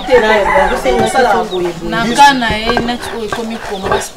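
Animated talking in Lingala, mostly one woman's voice, with chickens clucking in the background.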